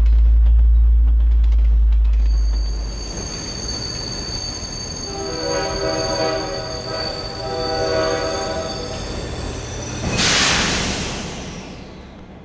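A passenger train: a deep rumble for the first few seconds, then a steady high-pitched squeal of the wheels. The train horn sounds in the middle. Near the end comes a sudden burst of hiss that fades away.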